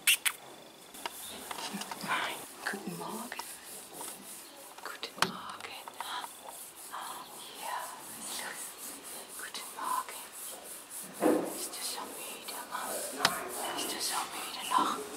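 Quiet, whispered speech from a woman, in short broken phrases, with a few sharp clicks.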